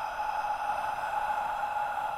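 A steady electronic drone: one held, fairly high tone wrapped in a band of hiss, unchanging throughout, part of a synthesized score.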